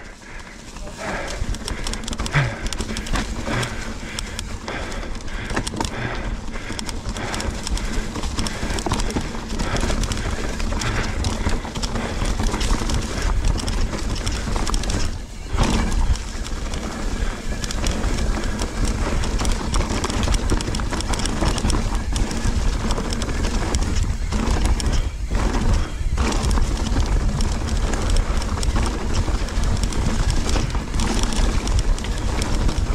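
Specialized Enduro mountain bike descending a rough dirt singletrack: tyres rolling over leaves, roots and rocks, with steady clattering and rattling from the bike as it goes over the rough ground.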